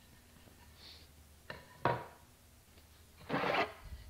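Wooden boards being handled as one is pulled from a stack: a faint click, then a sharp wooden knock a little under two seconds in, and a brief scraping rub of wood sliding on wood near the end.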